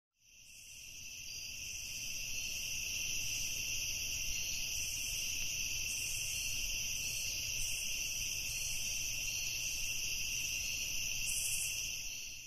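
A steady, high-pitched, insect-like trilling with a low rumble beneath, fading in over the first couple of seconds.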